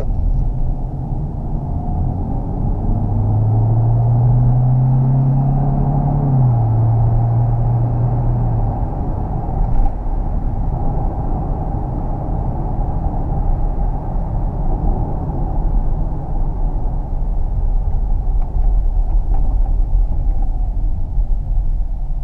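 Steady road and tyre rumble inside the cabin of a Kia Optima Plug-in Hybrid under way. From about three seconds in a drivetrain tone rises in pitch, drops suddenly at a gear change about six seconds in, and fades out by about nine seconds.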